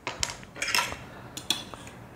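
Metal cutlery clinking against a ceramic serving dish: a handful of short, sharp clicks spread over the first second and a half.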